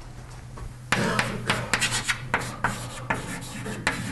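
Handwriting on a board: a quick run of short, scratchy strokes beginning about a second in, over a steady low hum.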